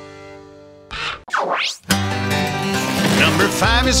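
Cartoon song music: a held final chord fades out, then a short swooping sound effect dives steeply in pitch and shoots back up about a second in. A bouncy country-style tune with plucked strings starts just after, and a singing voice comes in near the end.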